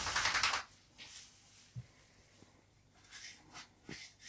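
Faint handling noises: a short scratchy rustle at the start, a soft thump a little before the middle, and a few light scrapes and taps near the end.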